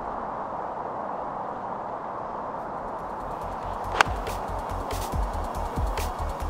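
An iron striking a golf ball: one sharp click about four seconds in, over steady outdoor background noise. Background music with a steady beat starts just after the strike.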